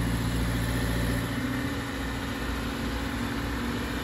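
A car engine idling steadily, a low hum with a slight change in tone about a second in.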